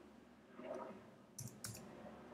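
Faint clicks of computer keyboard keys being pressed, two quick ones about a second and a half in.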